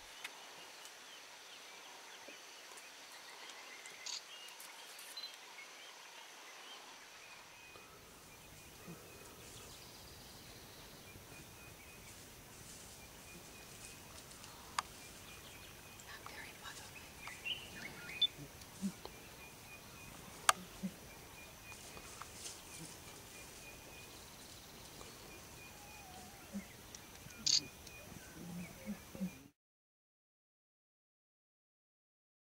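Faint outdoor ambience: a soft, evenly pulsing high chirp runs through it, with scattered sharp clicks and a few short low sounds near the end.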